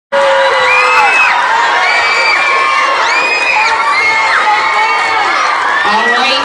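A crowd of middle-school students cheering and screaming, with many high shrieks overlapping.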